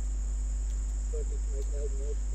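Steady electrical hum of the recording line, low and constant, with a thin high-pitched whine over it. A faint, distant voice murmurs in the second half.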